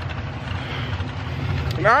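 Distant drag-racing car engines heard across the strip as a steady low rumble, with a man's voice coming in near the end.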